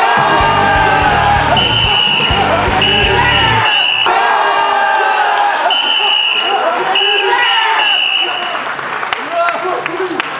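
Onlookers cheering and shouting after a wrestler is thrown in a ssireum bout, with an edited music sting over it. The sting has a deep pulsing beat for the first few seconds and a high tone that sounds three times, then three times again.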